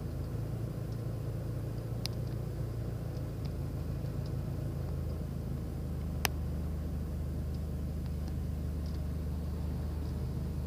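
Steady low hum of an idling car engine, with a few faint high ticks and two sharp clicks, one about two seconds in and one about six seconds in.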